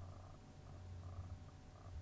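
Near silence: a faint, steady low hum of room tone picked up by the microphone.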